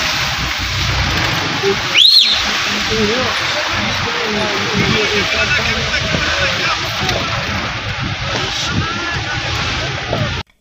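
Steady rushing of meltwater from a glacier, heard from a slowly moving vehicle with its low engine and road rumble beneath. Faint voices, and a short rising whistle about two seconds in.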